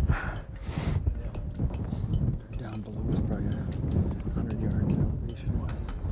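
Wind rumbling on the microphone on an exposed mountainside, with scattered light clicks and knocks of footsteps and gear on rocky ground, and a breathy exhale or laugh at the very start.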